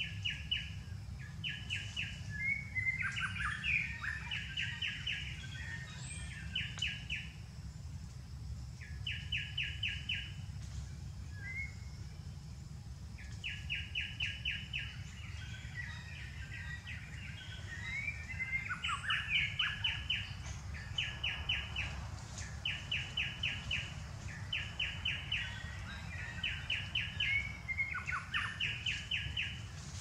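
Birds calling: a short, rapid pulsed trill repeated every second or two, with scattered chirps and squeaks in between, over a steady low rumble.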